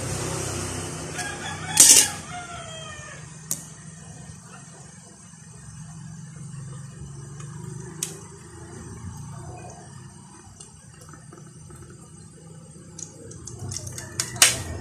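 A rooster crowing once in the background near the start, one long call falling in pitch. Sharp clicks of plastic snapping as the glued housing of a solar flood light is pried apart by hand, the loudest about two seconds in and another a few seconds later.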